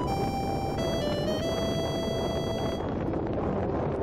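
A short electronic tune of about five notes, stepping down in pitch and ending on a longer held note, heard over steady wind and road noise from a moving motorcycle.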